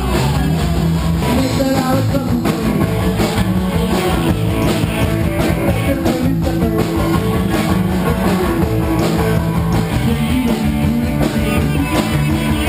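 Live rock band playing: electric guitars, bass guitar and drum kit, loud and without a break.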